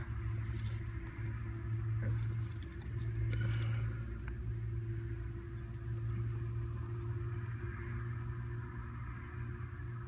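Rustling and light scrapes as a handheld phone is moved in under the wooden barrel platform, mostly in the first few seconds, over a steady low hum.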